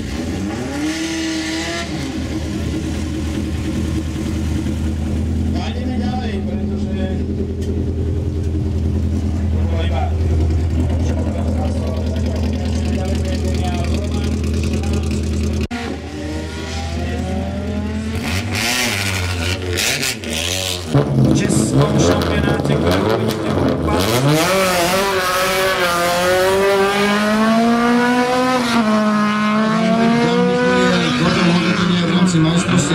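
Peugeot 306 Maxi hill-climb car's engine idling steadily, with a few short blips of the throttle. In the second half it is revved up and down over and over, held ready for the launch at the start line.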